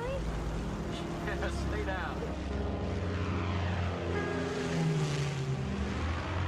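Propeller airplane engine droning steadily in flight, swelling a little near the end.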